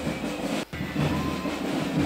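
A pipe and drums band playing as it marches, bagpipes and drums together, with a brief dropout in the sound about a third of the way through.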